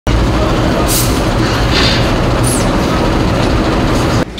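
Large warehouse fire of stored pillows and blankets, a loud, steady roar of burning with a few brief hissing flare-ups and a short falling whistle about halfway through.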